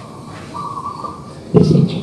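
A man's lecturing voice over a microphone resumes about one and a half seconds in, after a pause holding low background noise and a brief faint steady tone.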